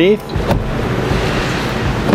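A Jeep Wrangler JK's rear door latch clicks open once, about half a second in, as the door is pulled open, over a steady background hum and hiss.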